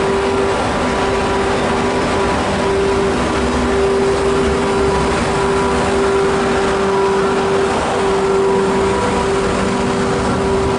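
Class 269 electric locomotive pulling its train out of the station and passing close by, with a steady hum held at one pitch over its running noise, then the coaches rolling past.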